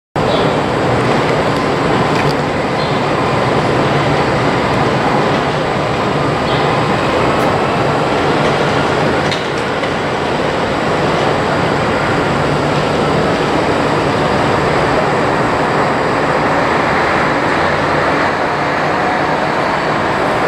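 Steady loud rumble and hiss of trains in a covered railway station, beside a standing SBB intercity train, with a few faint clicks.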